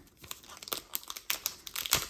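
Foil trading-card pack wrapper crinkling and tearing as it is pulled open by hand, in irregular crackles with a few sharper ones spread through.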